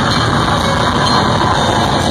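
Death metal band playing live at full volume, heard through a phone's microphone close to the stage as a dense, unbroken wall of distorted guitars, bass and drums.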